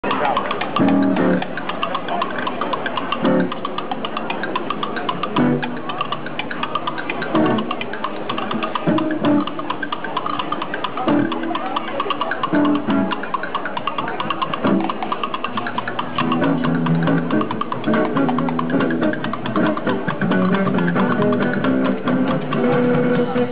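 Live busking duo: a nylon-string acoustic guitar strumming chords alongside a homemade washboard percussion rig, its ridged board and attached plastic cups scraped and tapped by hand in a fast, steady rattle.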